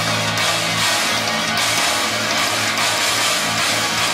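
Playback of a heavy metal song demo: programmed drums with distorted guitars, dense and loud with low chugging notes and a constant cymbal wash.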